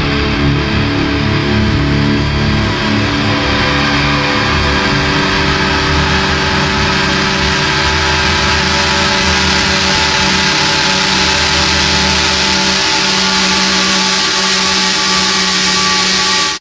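Heavy metal recording at the close of its final track: a dense, sustained wall of distorted electric guitar noise and feedback with held drone tones. The high hiss swells brighter as it goes on.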